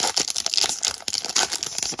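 Shiny foil wrapper of a 2023 Topps Stadium Club baseball card pack crinkling as it is torn open by hand and the cards are pulled out, a dense run of irregular crackles.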